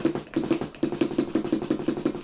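A DW 9000 double bass drum pedal played fast on an electronic kit's kick trigger pad: a quick, even run of kick strokes, roughly six a second.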